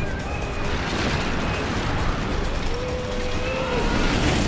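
Film soundtrack: score music with held notes over a steady low rumble and rushing noise, with one long sustained note near the end.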